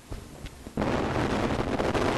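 A woman coughing hard into a close microphone, the rush of breath hitting it as a loud harsh blast that starts a little before the middle and runs on unbroken.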